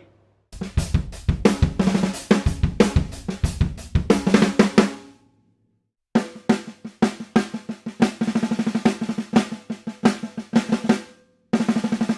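Ludwig Supraphonic chrome aluminium snare drum played with sticks. First come about four seconds of busy playing with bass drum hits underneath, then a short pause, then a fast even run of snare strokes with a clear ringing tone, and a few more strokes near the end.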